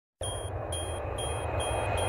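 Intro sound effect: a low rumble that slowly builds in loudness under a high tone pulsing on and off about twice a second.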